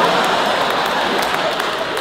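Audience applauding, the applause slowly dying away.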